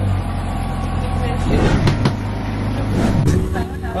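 Motorboat engine running with a steady low drone, with voices over it; the sound changes about three seconds in.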